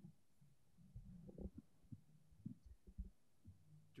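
Near silence: meeting-room tone with a faint low hum and scattered soft low thuds, like small knocks on a table or microphone.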